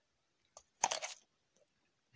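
A crisp bite into a raw apple: one short crunch about a second in.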